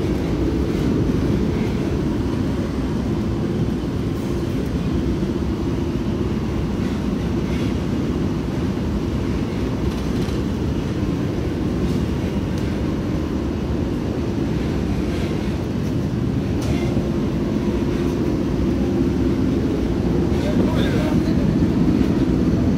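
Eurotunnel shuttle train running through the Channel Tunnel, heard from inside a wagon: a steady low rumble with a held hum and occasional faint clicks.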